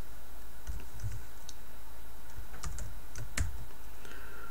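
Typing on a computer keyboard: a handful of separate, irregular key clicks.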